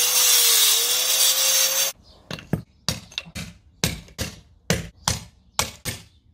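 Angle grinder with a stone cutting disc running through concrete for about two seconds, with a steady whine that rises slightly. It stops suddenly and is followed by a steady run of club hammer blows on a bolster chisel, a little over two a second, chipping out the cut groove.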